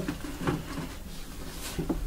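Handling noises as cards and card holders are picked up and moved about: a few soft knocks and rustles, with one about half a second in and a couple near the end.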